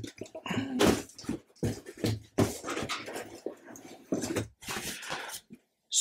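Cardboard model kit box being opened and its contents handled: the lid scraping off, then uneven rustling and light knocks of paper and bagged plastic parts.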